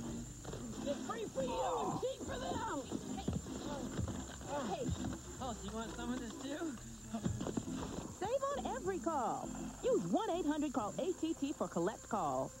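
Human voices making wordless vocal sounds throughout, their pitch sweeping up and down in arcs.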